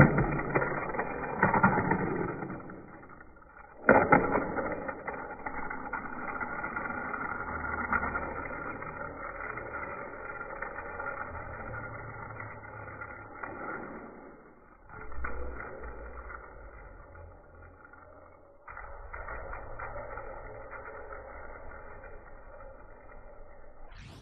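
Die-cast toy car running along plastic Hot Wheels track, muffled. A sharp clack at the start and more knocks about four and fifteen seconds in, with a continuous rolling rattle between.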